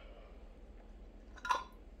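A metal canning lid set onto the rim of a glass quart jar: one short, ringing clink about one and a half seconds in.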